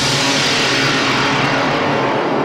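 A long whooshing sound effect that sweeps steadily downward in pitch, over a sustained low music drone.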